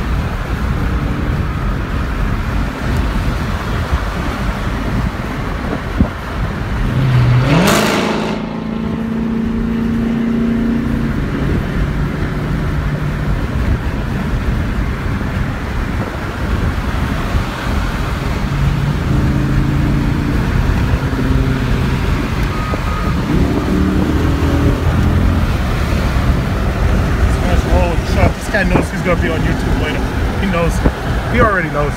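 Car engine and road noise heard from inside the cabin while driving in highway traffic. About seven seconds in, the engine note rises as the car accelerates, and a brief loud rush of noise follows.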